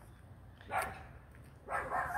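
A dog barking: two short barks about a second apart.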